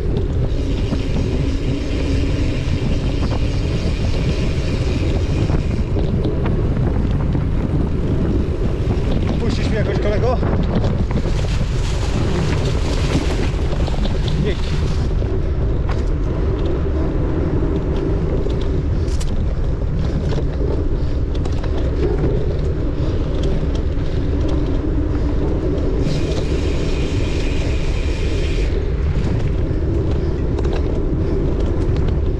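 Wind buffeting the microphone of a bike-mounted camera, mixed with the rumble and rattle of a mountain bike riding a dirt forest singletrack; a loud, steady noise throughout.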